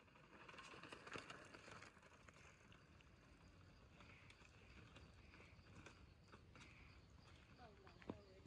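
Near silence, with a few faint clicks in the first two seconds and scattered faint ticks after.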